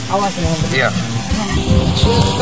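A man speaking briefly over background music.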